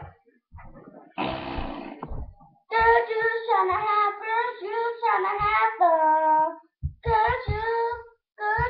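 A child singing unaccompanied, held notes sliding up and down, after a short breathy sound about a second in. A few light low knocks come with the singing near the end.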